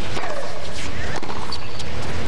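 Tennis rally: a ball struck by rackets, several sharp hits in a couple of seconds. Just after the first hit comes a short vocal cry that falls in pitch, the kind players give on the shot.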